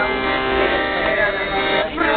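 Accordion playing sustained chords, with women's voices singing along from song sheets. The music dips briefly near the end.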